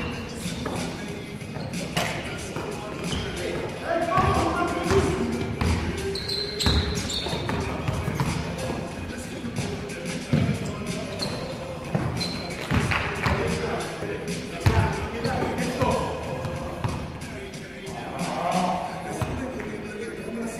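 Basketball bouncing on a hard gym court in irregular thuds, with players' voices calling out, echoing in a large hall.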